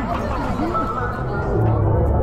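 Voices chattering over background music with a steady bass.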